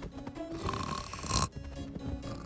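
Cartoon bat snoring in its sleep, a drawn-out snore that builds and cuts off about one and a half seconds in, over light background music.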